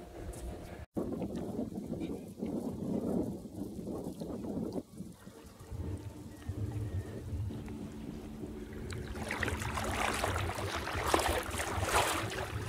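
Wind rumbling on the microphone. From about nine seconds in it is joined by the crackling hiss of shallow water lapping close to the microphone.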